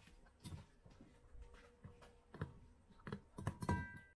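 Ice blocks knocking against a stainless-steel dog bowl as a Samoyed puppy licks and nudges them: a few separate knocks, with a cluster near the end where the bowl rings briefly.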